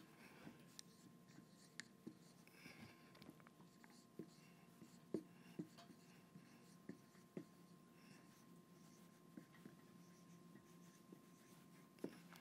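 Faint dry-erase marker strokes on a whiteboard: soft squeaks and scattered small taps as words are written, very quiet overall.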